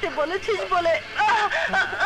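A woman's wordless vocal outburst, loud and wavering with rapid swings in pitch, in a fit of hysterical crying or laughter.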